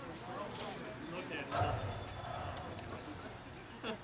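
Indistinct voices of players talking and calling out across an outdoor softball field, with one louder call about one and a half seconds in.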